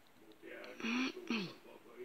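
A person's voice, brief and without clear words, from about half a second in to about a second and a half in, in a small room.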